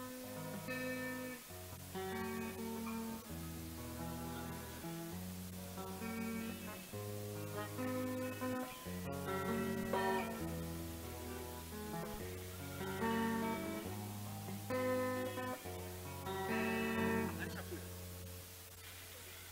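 Instrumental guitar music: a guitar melody of held, separate notes over a steady bass line. There is a brief click about nine seconds in, and the music fades out at the end.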